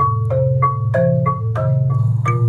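Kalimba and marimba playing a melody together in a duet: even pitched notes about three a second over sustained low notes.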